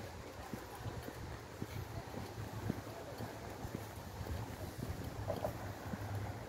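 Footsteps of a person walking on a park path, a soft step about every half second, over a low wind rumble on the microphone.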